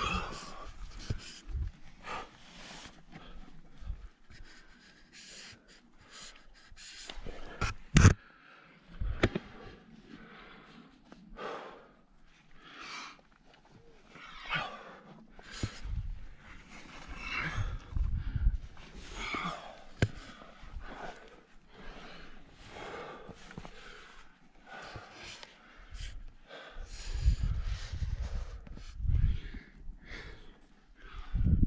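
A climber panting hard close to the microphone as he scrambles up rock, with hands and gear scraping and knocking on the rock. A sharp knock about eight seconds in is the loudest sound, and low rumbles hit the microphone in the middle and near the end.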